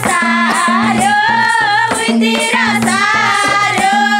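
Women singing a Nepali dohori folk song together, over the steady beat of a madal hand drum and hand clapping.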